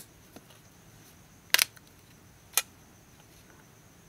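Sharp clicks of the Palm LifeDrive's case clips letting go as its metal backplate is pried off: one at the start, a quick double click about a second and a half in, and another about a second later.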